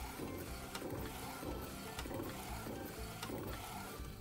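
McLaud MP1812 DTF printer running continuously on roll film: a fairly quiet mechanical whirr of the print-head carriage and film feed, with a soft pattern repeating about twice a second.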